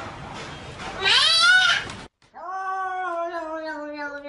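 Two cat meows. About a second in comes a short, loud meow that rises and falls in pitch. After a brief gap, another cat starts a long, drawn-out meow that slowly sinks in pitch.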